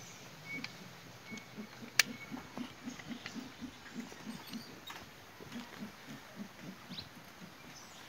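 Mantled howler monkey giving a run of low grunts, about four or five a second, that loosens and breaks up in the second half. A single sharp click about two seconds in is the loudest sound.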